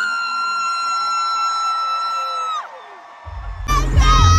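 Live stadium concert sound: a long high held note that ends with a falling slide about two and a half seconds in, over a break with no bass. Near the end the heavy bass drops back in and another high note starts, with crowd cheering.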